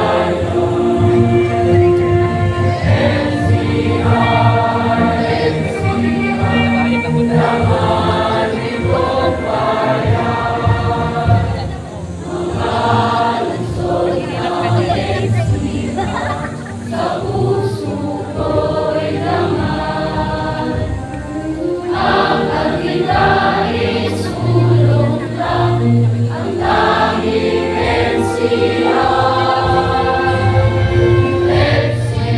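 A large group of graduates singing an institutional hymn together as a choir, in sustained sung phrases without a break.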